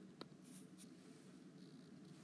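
Faint handwriting on an iPad touchscreen: a few light ticks and a soft scrape as the letters are written.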